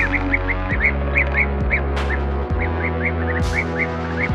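Blue-tailed bee-eater calls: short chirps in a quick series, about three or four a second with a brief pause near the middle, over background music with steady held notes.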